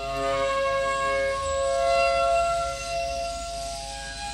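Slow meditative flute music: long held notes that overlap and ring on, changing pitch only slowly.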